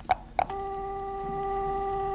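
Telephone dial tone: a steady single-pitched hum with overtones, starting about half a second in after a couple of short clicks from the handset. Here the open line's tone serves as the 'A' note to tune by.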